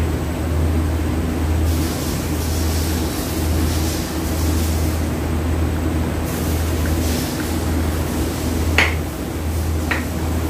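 Steady low machine hum, with a hiss for a few seconds in the middle. Near the end there is a single sharp metallic clink as a hand tool works on a transfer case's bolts.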